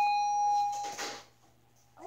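An electronic beep: one steady tone held for about a second that cuts off abruptly, followed by a brief burst of noise.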